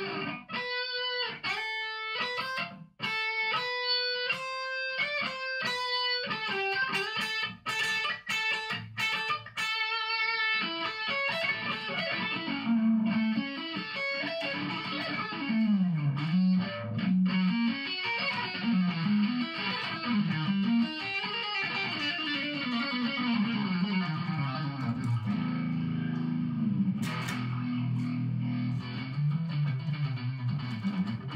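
Electric guitar played solo, with no band behind it. For about the first ten seconds it plays separate single notes with short gaps between them. From about eleven seconds in it plays a faster, continuous lead line over moving low-string notes.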